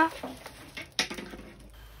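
Clear plastic packaging being handled and lifted out of a cardboard box, with a short sharp crinkle about a second in.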